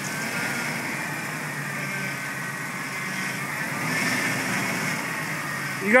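Jeep engine running at low revs on the rock obstacle, a steady low hum that grows a little louder about four seconds in.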